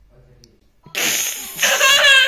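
A little girl blowing a loud raspberry about a second in, running straight into her high-pitched, wavering laugh.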